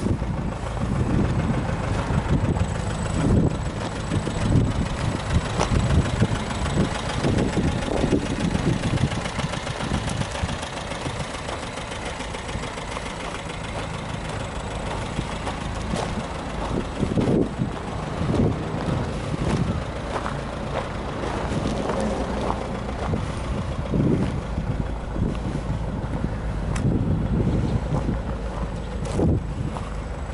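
Nissan Figaro's 1.0-litre turbocharged four-cylinder engine idling steadily, mixed with wind buffeting the microphone.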